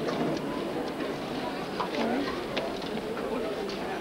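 Indistinct voices and general background bustle of people, steady throughout, with a few light clicks and knocks.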